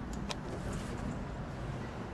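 Two quick clicks as the elevator's up call button is pressed, over a steady low rumble of ambient noise.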